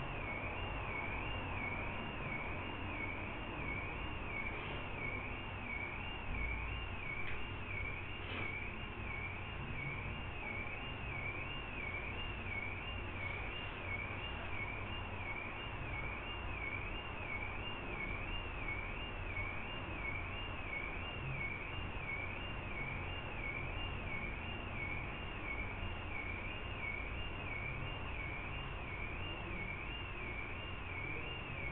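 A steady high-pitched electronic whine, wavering regularly up and down in pitch about once a second, over a low background hum.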